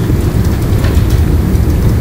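A steady low rumble with hiss from the lecture-room recording's background noise, in a pause between words.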